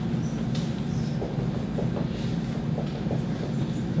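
Steady low hum of room noise with faint, irregular taps and strokes of a dry-erase marker writing on a whiteboard.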